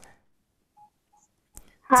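Two short, faint electronic beeps about a third of a second apart in an otherwise near-silent pause, then a man's voice starts again at the very end.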